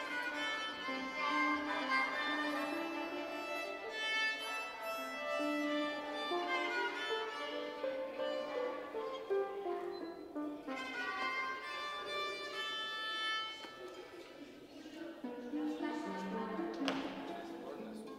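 Violins played by children carrying a melody with other instruments. The playing thins out and drops in level a little after two thirds of the way through. A single sharp click comes near the end, followed by lower notes.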